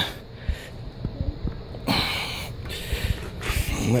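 A man's breathing close to the microphone while straining to pull on the trailer's winch post: a short breath early on, then a long exhale lasting about two seconds, with a few faint knocks.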